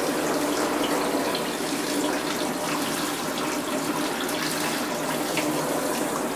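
Handheld shower wand spraying a steady stream of water over a cat in a bathtub, an even hiss of running water.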